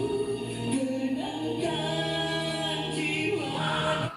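A slow pop ballad sung as a duet by a female and a male voice, with long held notes. The music stops abruptly at the end.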